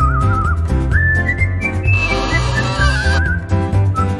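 Upbeat children's background music: a whistled lead melody with wavering vibrato over a steady, pulsing bass beat.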